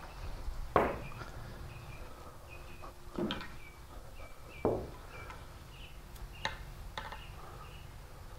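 A few sharp knocks, the first the loudest, as billiard balls are handled and set down on the pool table. Small birds chirp faintly throughout.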